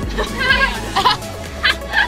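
A girl laughing in short, bleat-like giggles, over the low rumble of a moving coach.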